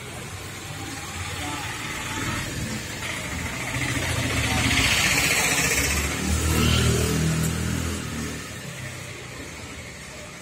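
A motor vehicle's engine running, growing louder toward the middle and fading away near the end.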